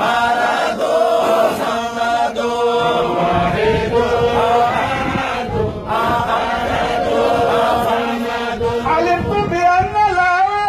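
Men chanting an Arabic Sufi devotional poem together, a continuous melodic chant without pause. Near the end, one voice stands out, wavering up and down in pitch.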